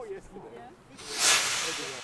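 Whoosh transition sound effect: a rush of hiss that swells suddenly about a second in, then fades away slowly. Faint background voices can be heard before it.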